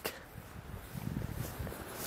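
Faint low rumble and handling noise from a handheld camera carried on a walk, with soft footsteps on a paved path.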